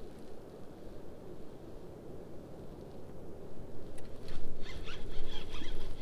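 A spinning fishing reel working a hooked striped bass, clicking and whirring from about four seconds in, over a low steady rumble.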